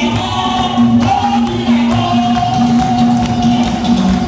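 Live gospel praise music: voices singing long held notes over a band with a steady beat, with a congregation clapping along.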